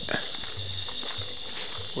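Steady high-pitched trilling of night insects in a rainforest, a continuous ratcheting chorus.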